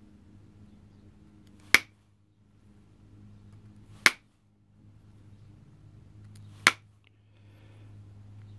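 Pressure flaking a stone drill bit: three sharp snaps, about two and a half seconds apart, as flakes pop off the edge under a hand-held pressure flaker.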